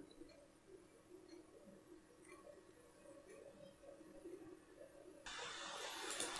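Near silence: room tone, with a faint steady hiss coming in about five seconds in.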